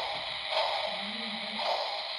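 Lionel O-gauge Polar Express model steam locomotive running on the track: a steady hiss of wheels and motor, with soft electronic chuffs about every half second from its sound system.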